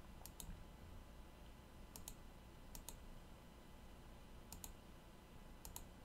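Faint computer mouse clicks in five quick pairs, spread unevenly through a few seconds, over near-silent room tone.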